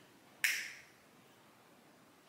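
A single short, sharp click with a brief hissy tail, about half a second in, against otherwise quiet room sound.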